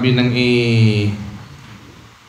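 A man's voice into a handheld microphone, holding one long intoned syllable with slowly falling pitch for about a second, then trailing off into a pause.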